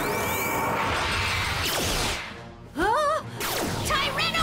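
Cartoon action sound effects over a music score: a loud rushing whoosh lasting about two seconds, then a short wavering pitched cry about three seconds in.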